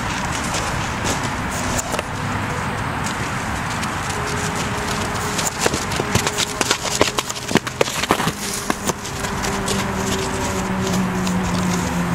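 A plastic bag tied to a training stick rustles and crackles in a quick irregular flurry about halfway through, as it is rubbed and waved against a frightened horse. Steady background noise runs underneath.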